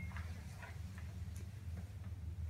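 Faint footsteps on a concrete floor, a soft tick about every half second, over a steady low hum.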